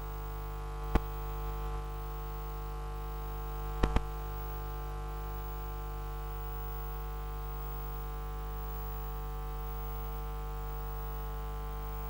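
Steady electrical mains hum with a stack of even overtones. A sharp click sounds about a second in, and two quick clicks follow at about four seconds.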